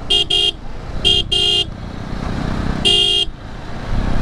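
Motorcycle horn sounding five times: two quick short beeps, another pair about a second later, and one longer blast near the end. It is honking at the slow bike ahead to make way, over the steady noise of engine and wind while riding.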